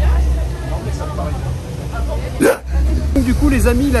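Crowd voices in the background over a low rumble of wind and handling on the microphone, broken about halfway through by one short, loud vocal burst. A man's voice starts up near the end.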